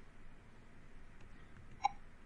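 Quiet room tone, broken about two seconds in by one short vocal sound from a man, like a hiccup or a small throat noise.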